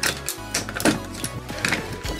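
Clicks and knocks of die-cast metal and plastic toy parts being handled and pressed together as a Voltron lion is slotted into the robot's body, over background music.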